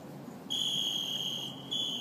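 A high, steady whistle blown in two blasts: a long one of about a second starting about half a second in, then a shorter one near the end, over faint outdoor background noise.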